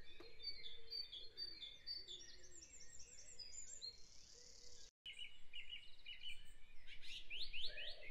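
Faint background recording of a dawn chorus: many birds chirping and trilling at once. The sound drops out completely for an instant about five seconds in.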